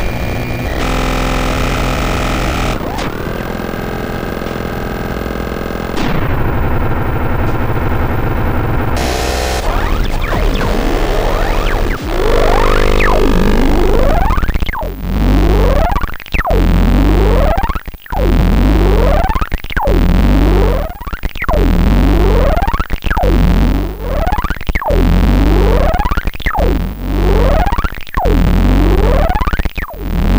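Heavily distorted electronic music from a drum machine and modular synthesizer. A dense, noisy drone fills the first dozen seconds. Then a slow repeating pattern takes over: a deep bass drum hit followed by a rising, bubbling synth sweep, about every second and a half.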